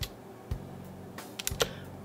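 A handful of sharp clicks from a computer keyboard and mouse: one at the start, one about half a second in, then a quick cluster of three or four a little past the middle.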